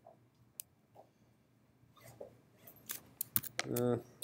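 A few faint, sharp clicks in a quiet room: one about half a second in and a quick cluster near the end. A short spoken "uh" follows right at the end.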